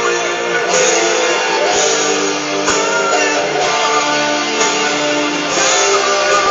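Guitar strummed in an instrumental passage, with a new chord struck about once a second and left to ring between strokes.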